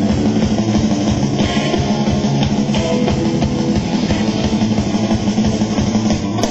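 A live rock band playing loud, steady music with guitar and drum kit.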